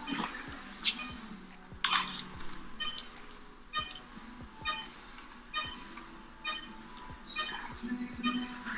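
Patient vital-signs monitor beeping in a steady rhythm, about once every 0.9 seconds in time with the pulse of the anesthetized patient. Two sharp clatters of handling come near the first and second seconds.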